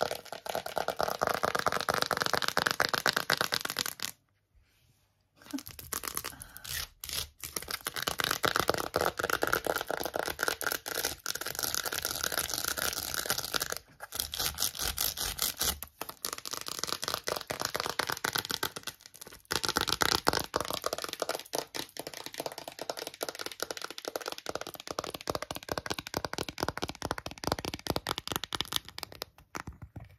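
Fast tapping and scratching with long false fingernails on a plastic phone case, a rapid run of clicks. There is a brief pause about four seconds in, and a few short breaks later.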